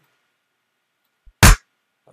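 A single short drum hit, one sliced one-shot from a hip hop break loop, played back about a second and a half in. It has deep bass and a bright top.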